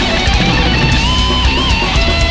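Death metal band playing an instrumental passage: distorted electric guitars, bass and drums, with a lead guitar holding one note from about a second in and bending it with vibrato near the end.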